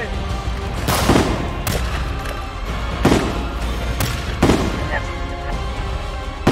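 Pistol shots in a film gunfight, about five single shots spaced irregularly a second or so apart, each with a short echoing tail, over background music.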